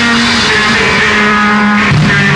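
Noise rock played on heavily distorted electric guitar, holding long notes over a dense wash of noise, with the pitch shifting a couple of times.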